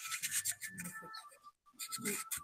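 Faint rubbing and scratching noises over quiet room background, with a faint steady high tone underneath and a short drop to near silence about a second and a half in.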